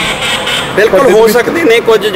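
A man speaking Punjabi into a close microphone, starting after a short pause.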